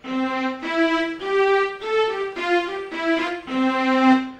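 Sampled violin from a string sound font, played with the arpeggiator switched off: a run of single sustained notes stepping up and then back down again.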